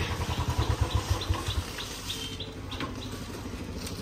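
Royal Enfield single-cylinder motorcycle engine running as the bike rides up, its strong low pulsing beat dropping to a quieter steady idle about a second and a half in. Birds chirp in quick repeated notes throughout.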